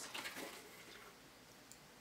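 Faint handling of a paper leaflet, soft rustles in the first half second, then near silence with room tone.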